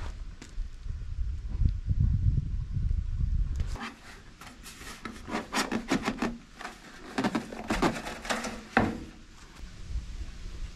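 Thin sheet-metal gutter downspout being handled and fitted: a run of hollow clanks, taps and scrapes, some of them ringing briefly, with the sharpest knock near the end. A low rumble fills the first few seconds before the clanking starts.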